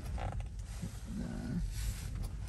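Low, steady road rumble inside a moving Tesla's cabin as it pulls out into a turn, with a short tone just after the start and a brief low groan from a person about a second in.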